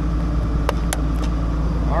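An engine idling steadily with a low hum, and two sharp clicks a fraction of a second apart about a second in.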